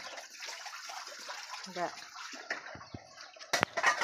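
Dishes being washed by hand in a plastic basin of water: water sloshing and splashing, with a couple of sharp knocks near the end.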